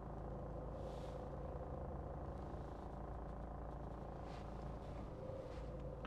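Engine of a Volkswagen Transporter van idling, a steady low hum heard from inside the cab.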